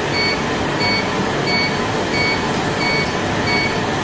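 Laser hair removal machine beeping in a steady rhythm, about three beeps every two seconds, each beep marking a laser pulse, over a steady rushing machine noise.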